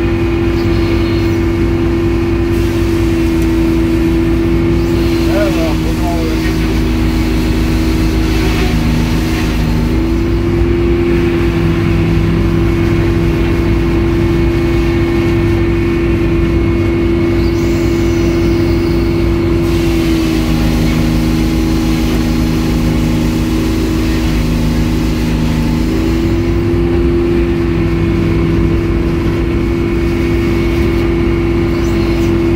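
Edmiston hydraulic circular sawmill running, its large circular blade cutting through a log on the carriage. A steady loud hum that drops slightly in pitch twice, about ten seconds in and again for several seconds past the middle.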